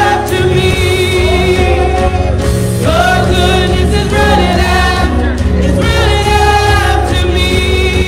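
A gospel praise team singing together in harmony over instrumental accompaniment with a steady bass, the voices holding long notes and sliding between them.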